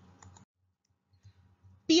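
Near silence: faint room tone with a couple of small clicks about a quarter second in, then the sound cuts to dead silence until a woman's voice starts near the end.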